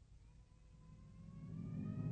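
Drone of approaching propeller bomber engines fading in and growing steadily louder, its pitch rising slowly over a low rumble.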